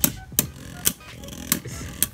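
Beyblade Burst spinning tops clashing in a clear plastic stadium: four sharp clacks, unevenly spaced, as the tops strike each other.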